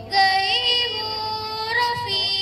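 A girl singing an Urdu naat solo into a microphone, holding long notes that glide slowly up and down.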